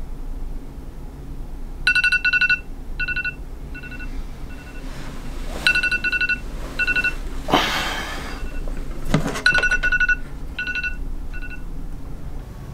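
Smartphone alarm tone: a phrase of short electronic beeps, each phrase dying away, repeating three times about every four seconds. Around the middle there is a rustle, and just before the last phrase there is a thump.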